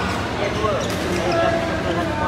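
Sharp knocks of badminton rackets striking shuttlecocks and short squeaks of shoes on the court floor, a few times in quick succession, in a large echoing sports hall.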